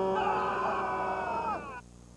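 A man's long, drawn-out yell, joined by higher-pitched yelling, that falls away and breaks off shortly before the end.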